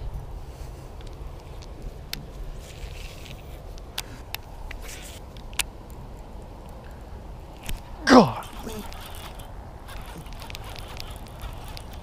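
A single waterfowl honk that falls in pitch, about eight seconds in, over scattered faint clicks and a low steady hum.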